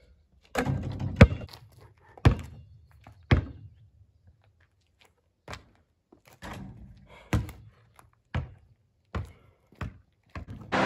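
A basketball bouncing on a concrete court, a series of sharp thuds about a second apart. Near the end the bounces come quicker as the ball settles.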